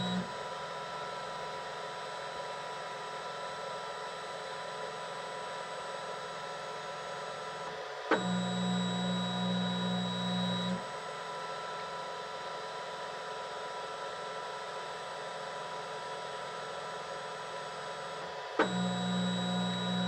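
Flashforge Guider II 3D printer running its automatic bed-levelling routine: a steady whine from its fans and electronics, with a lower hum from its motion system coming in for about three seconds in the middle and again near the end, each time starting with a click.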